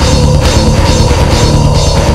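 Loud heavy rock from a band's demo recording: a drum kit keeps a steady beat under held, sustained instrument notes.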